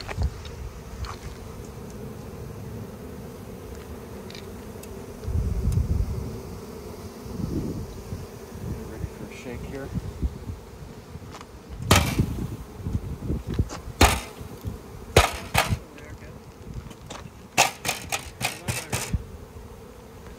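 Honeybee swarm buzzing in a steady hum as the bees walk into a hive box. In the second half a series of sharp knocks and clacks cuts through the buzzing.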